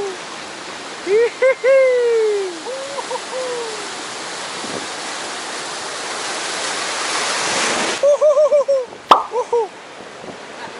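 A voice holding long, wordless melodic phrases with quick wavering notes, over the rushing noise of surf that swells and then cuts off suddenly about eight seconds in. A single sharp click follows about a second later.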